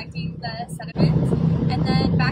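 Steady low drone of a ship's engine under a woman's speech, with wind gusting on the microphone from about a second in.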